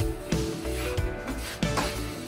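Background music with a beat, mixed with the scrape of a metal putty knife spreading filler across a drywall wall.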